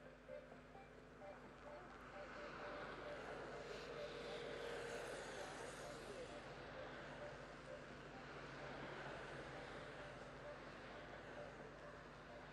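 Faint road and motor noise from a camera vehicle moving along the course. It swells about two seconds in, is loudest around the middle, then eases off.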